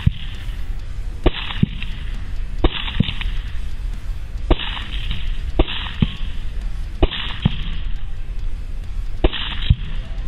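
About ten rifle shots from an APF MSR semi-automatic rifle, fired in quick strings, often in pairs a third of a second apart, at uneven gaps. Each shot has a short tail.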